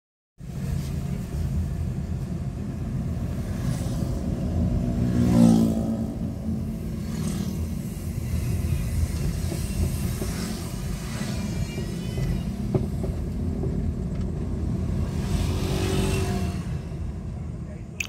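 Nissan car's engine and road noise heard inside the cabin while driving, a steady low rumble, with a brief rising tone about five seconds in.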